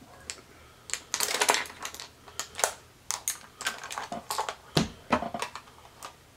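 Irregular light clicks, taps and rattles of makeup products and tools being picked up and handled, with a dense cluster about a second in.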